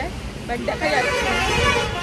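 A vehicle horn sounding one steady, held honk for about a second in the second half.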